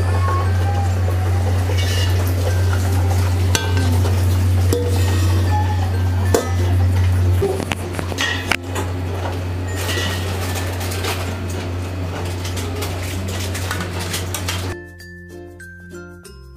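Stainless steel tongs, lid and steamer pot clinking and clanking as food is lifted into a perforated steel colander, over a steady low hum. About a second before the end this gives way to background music.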